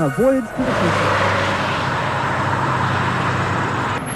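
Space Shuttle launch: a steady, loud rocket-exhaust noise from liftoff, starting under a second in and cutting off abruptly near the end.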